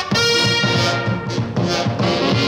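1940s swing big band playing an instrumental passage, with a sustained brass chord over a walking rhythm section.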